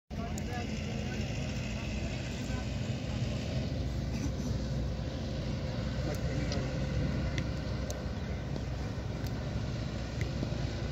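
Open-air ambience: a steady low rumble with faint, indistinct distant voices.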